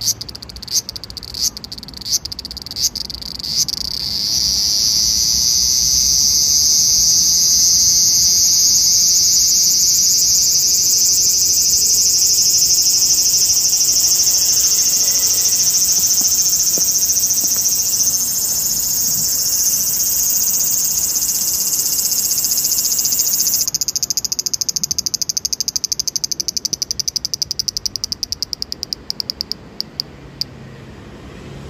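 A cicada calling loudly. It starts with a few separate clicks, then about four seconds in it swells into a continuous high-pitched buzz. Near the end the buzz breaks into rapid pulses that die away.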